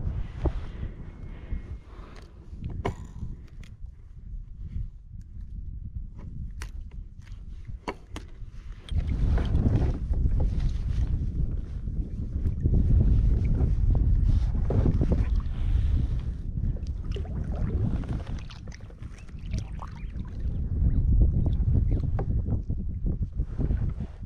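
Water sloshing and splashing against a plastic kayak's hull as a queenfish is held in the water on lip grips to be revived. Scattered clicks and knocks of handling come first, then from about nine seconds in the splashing turns louder and rough, surging and easing.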